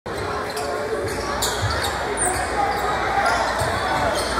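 Basketball bouncing on a hardwood gym floor, a few separate thuds, over the steady chatter of the crowd in the gymnasium.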